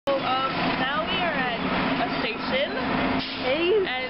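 A young woman talking, over a steady low hum.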